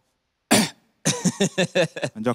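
A man coughs once, sharply and briefly, into a stage microphone about half a second in.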